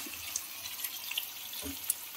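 Cubed potatoes and tomatoes sizzling in hot oil in a steel kadai: a steady hiss with a few small crackles and pops.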